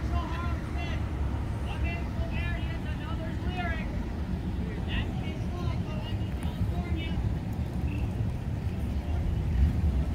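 Outdoor street ambience: faint, distant voices talking over a steady low rumble.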